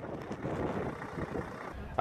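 Semi tractor's diesel engine running as the truck drives slowly, a steady noisy rumble with some wind on the microphone.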